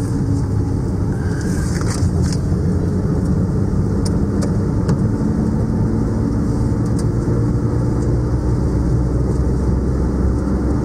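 Car interior noise while driving on a wet road: a steady engine and tyre hum, with a few light ticks.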